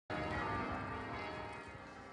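Church bells ringing, a dense cluster of tones that starts suddenly and then slowly dies away.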